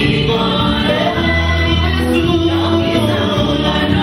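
Live gospel music: a group of singers singing together into microphones, backed by electric guitar and sustained low bass notes.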